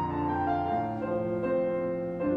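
Piano playing slow, held chords with a moving melody line: the accompaniment to a church choir anthem, heard while the choir is not yet singing.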